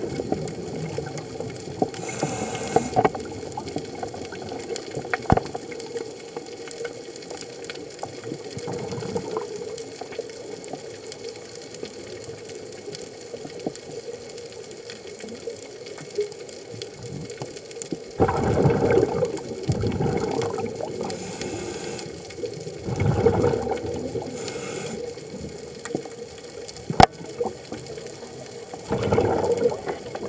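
Scuba diver's regulator breathing underwater: a short hiss with each inhale and a gurgling rush of exhaled bubbles, with long gaps between breaths, over a steady hum. A sharp click comes about five seconds in and another near the end.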